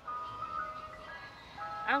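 A simple electronic tune of plain, held notes stepping from pitch to pitch, with a woman's voice starting to speak near the end.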